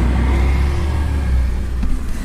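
Low, steady rumble of a Bentley Continental GT Speed's twin-turbo W12 engine and road noise, heard from inside the cabin while the car is moving.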